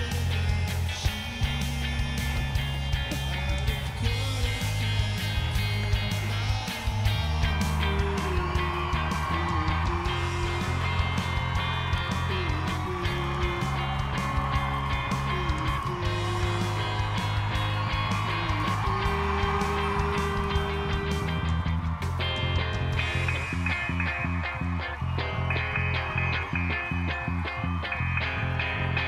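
Rock song with a steady bass line, drums and guitar. A wavering sung melody comes in about eight seconds in.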